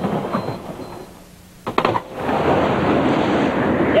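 A loud, steady rush of wind and water on a sailing yacht's deck in a squall. It comes in suddenly about two seconds in, after a brief quiet dip.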